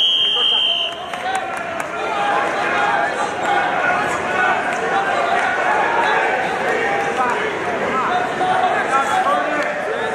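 Referee's whistle: one steady high blast lasting just under a second, signalling the end of the wrestling bout. Then many voices of the crowd talk and call out in a gym.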